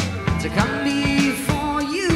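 Live hard-rock trio playing: bass guitar, electric guitar and drum kit, with a long held note over regular drum hits.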